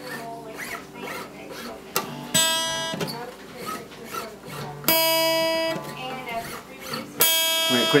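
Acoustic guitar string plucked three times, a few seconds apart, each note ringing briefly and fading, as the freshly stretched string is brought back to pitch.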